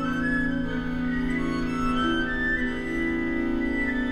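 String quartet of a piano quintet playing contemporary chamber music: long bowed notes, a steady low note held under higher notes that change every half second or so.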